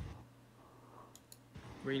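Two short, sharp clicks a fraction of a second apart, about a second in, over a faint low steady hum.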